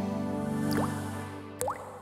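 Held background music chord with two water-drip sound effects, each a quick rising plink. The first comes a little under a second in, and the second, louder one comes about three-quarters of the way through.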